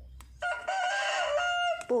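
A rooster crows once: a single pitched crow of about a second and a half that starts half a second in, rises, holds and steps down.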